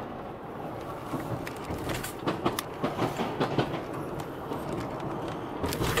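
Steady car road noise inside the cabin while driving across a steel truss bridge, with a run of irregular clunks from about two seconds in.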